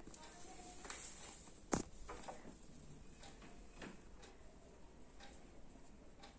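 Faint handling sounds and light scattered clicks as a cloth is arranged around a parakeet on a metal perch, with one sharp click not quite two seconds in.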